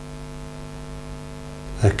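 Steady electrical mains hum, a low buzz with a stack of even overtones, running under a pause in speech. A man's voice comes back in just before the end.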